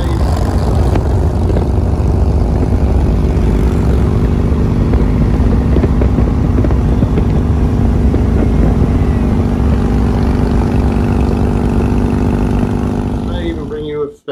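Two Harley-Davidson touring motorcycles' V-twin engines running steadily at road speed, loud and continuous.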